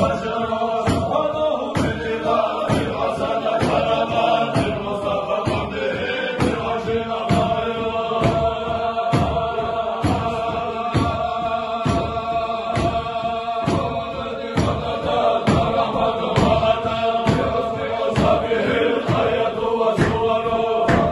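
A group of men chanting a zikr in unison, with hand claps keeping a steady beat about twice a second.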